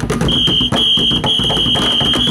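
Drumsticks beating a fast rhythm on plastic barrels and buckets, joined about a third of the way in by a loud, steady shrill tone that breaks off twice briefly and then holds.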